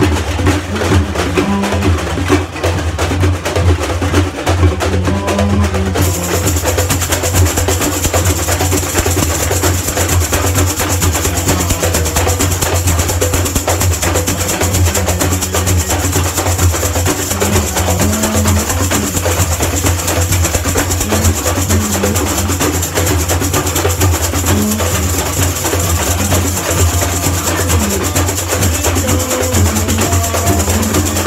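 Samba bateria percussion playing a steady samba groove: deep surdo bass drums under a dense, even rattle of chocalho jingle shakers and other hand percussion. The bright jingling grows fuller about six seconds in.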